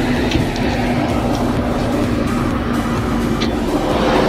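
Nissan Stagea's RB25DE NEO 2.5-litre straight-six idling steadily through its stock exhaust just after a cold start, sounding a bit cold.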